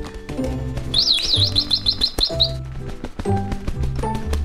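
Background music with a bass line, and about a second in, a quick trill of bird chirps lasting under a second: a cartoon bird's call.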